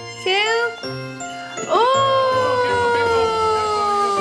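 Background music with jingling, under a high voice that swoops down briefly near the start, then rises about two seconds in into a long, slowly falling held "ooh".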